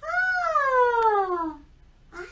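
A high-pitched voice making one long wordless cry, a puppet's voice. It rises briefly, then slides down in pitch for about a second and a half before stopping.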